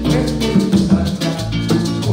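Live Haitian twoubadou band playing: strummed acoustic guitar over a bass line, with maracas shaking in an even rhythm.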